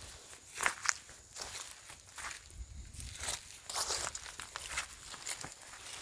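Irregular, soft footsteps crunching and rustling on dry ground, with several louder steps about a second in.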